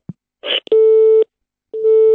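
Telephone busy tone over the studio's call-in line: two steady half-second beeps about a second apart, with a brief noise on the line just before the first. No caller is connected.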